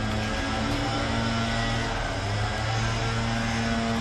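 A steady low hum with a faint even hiss under it, unchanging throughout.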